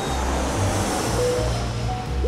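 A whoosh transition effect: a rush of noise that swells up and fades away, over background music with a steady bass line.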